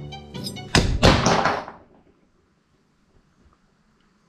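A sudden thunk from the handed-about knife handle, followed by about a second of cracking and crunching as the wood-and-aluminium handle gives under strain. Light string music plays for the first moment and stops at the thunk.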